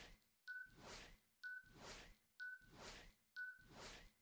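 Countdown-timer sound effect: a short high beep followed by a soft swish, repeating about once a second, four times.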